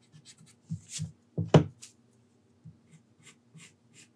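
Pencil sketching on paper: a run of short, irregular scratching strokes, the loudest about a second and a half in.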